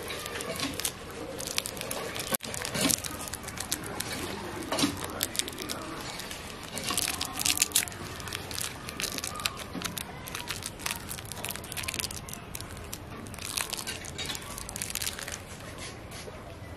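Foil lollipop wrappers crinkling and tearing as fingers peel them off the candy: a run of crackling rustles, busiest about halfway through and again near the end.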